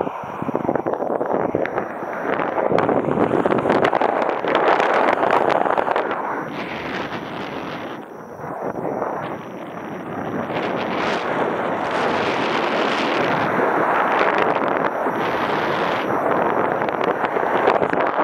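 Airflow rushing over the microphone of a camera worn in paraglider flight, buffeting unevenly. It eases off for a few seconds past the middle, then picks up again.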